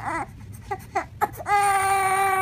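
Newborn baby fussing in short whimpers, then breaking into a long, loud cry about one and a half seconds in.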